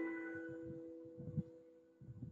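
Digital piano chord, struck just before, ringing on and fading away over about a second and a half. It is the A minor chord with B, its ninth, as the target note.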